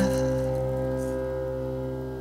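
A pop band's closing chord on guitars and keyboard ringing out after the last sung note, slowly fading away.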